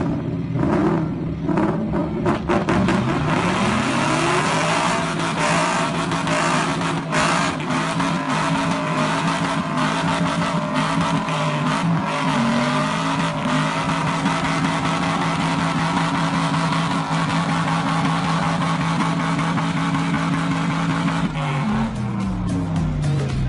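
Two cars' engines, a Corvette V8 and a Mustang, revving hard in a burnout tug-of-war with their rear tyres spinning. The revs climb over the first few seconds and are then held high and steady, with another rise about midway and a drop right at the end.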